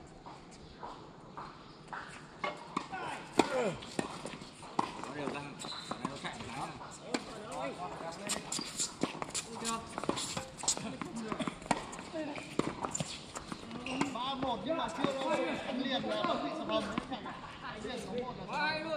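Tennis balls struck by rackets and bouncing on a hard court, a scattered run of sharp knocks during a doubles rally, with players' voices talking around it, more so near the end.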